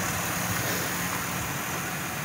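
Chevy Impala V6 engine idling steadily with the hood open. It is being run to purge trapped air from the cooling system after a thermostat replacement.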